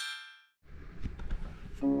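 A bright metallic chime rings out and fades away within about half a second. Faint handling noise follows. Near the end, music notes start and a voice says 'ohayou'.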